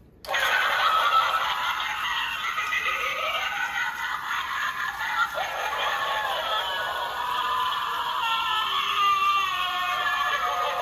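Animated skeleton-scarecrow Halloween prop on a swing, set off by pressing its try-me button: its small speaker starts suddenly and plays a tinny sound track as the figure swings.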